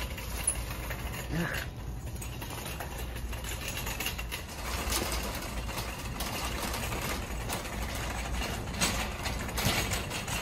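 A loaded wire shopping cart rolling across a hard store floor: a steady low rumble from the wheels with rattling from the basket and a few sharp clicks near the middle and end.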